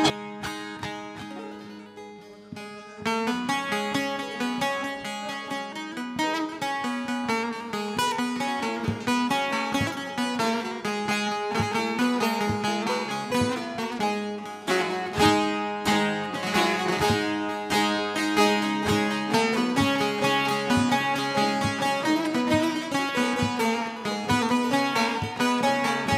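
Bağlama (Turkish long-necked lute) picked with a plectrum, playing a busy instrumental folk melody over a steady low drone. After a quiet opening of about three seconds, the playing comes in louder and carries on as the lead-in to a türkü.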